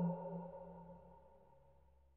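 Tail of a distributor's logo sting: a sustained electronic tone fading away, gone a little after a second in.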